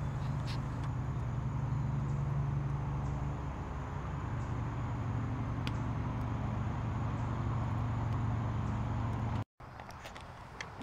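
A steady low engine-like drone that drops a little in pitch about three and a half seconds in and cuts off suddenly near the end.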